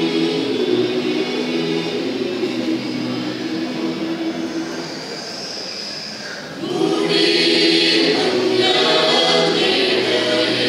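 Mixed church choir singing a Malayalam Christmas carol in long held notes. The singing drops softer a little past the middle, then comes back in louder near the end.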